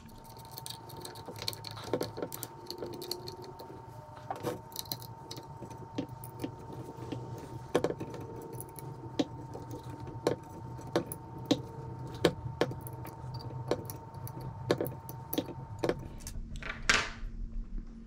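Hex key clicking and ticking irregularly in the screw heads as a vertical grip's M-LOK rail mount is tightened down, with a louder knock near the end, over a faint steady hum.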